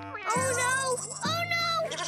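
Two drawn-out meows from cartoon cats, one after the other, over background music.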